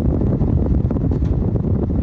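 Loud, steady low rumble of background noise on a phone recording, with no distinct sledgehammer blows standing out from it.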